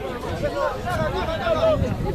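Voices calling out across an open field, with general crowd chatter behind them.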